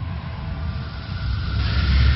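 A cinematic intro sound effect: a deep, steady rumble with a hissing whoosh that swells up near the end.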